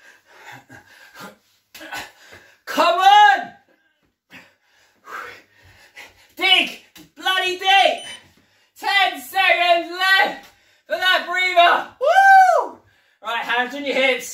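A man's raised voice in a series of short loud shouts and exclamations during a workout, with one longer call that rises and falls in pitch about twelve seconds in.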